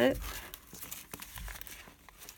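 Paper rustling and crinkling in a string of small, irregular crackles as hands push and shuffle folded paper signatures into a journal's spine.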